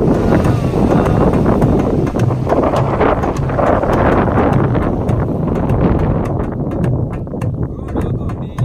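Loud wind buffeting the microphone, a rumbling rush that covers a live darbuka rhythm and singing; the drum's taps show through, more plainly near the end.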